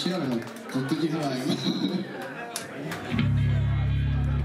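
A voice talking, then about three seconds in a loud, low electric bass guitar note rings out and holds steadily through the amplifier.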